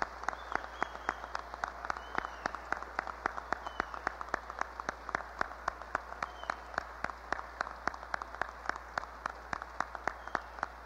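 Audience applauding steadily, a few nearby claps standing out at about four a second, over the low hum of an old cassette recording.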